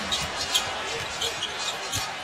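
Basketball arena crowd noise during live play: a steady murmur of the crowd, broken by a few short, sharp sounds from the court.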